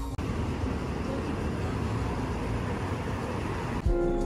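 Music cuts off at the very start, leaving steady city background noise: an even rush like distant traffic, with faint voices.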